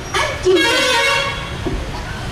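A vehicle horn sounds once, a steady note lasting about a second, partly over a student's voice on the microphone.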